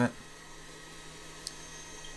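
Steady low hum and hiss of a blacksmith's forge air blower, with one faint click about one and a half seconds in.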